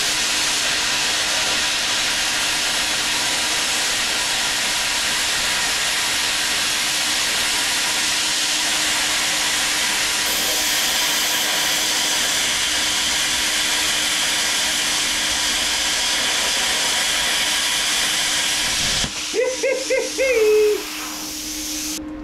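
Bestarc BTC500DP air plasma cutter at 50 amps cutting through 11 mm solid steel plate: a loud, steady hiss of the arc and compressed air for about nineteen seconds, then it cuts off suddenly as the cut is finished.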